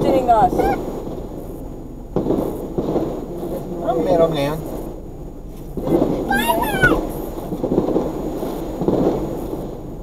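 Voices talking inside a car cabin over a steady low rumble from the cabin and road. There are short utterances near the start and about four seconds in, and one very high-pitched call about six seconds in.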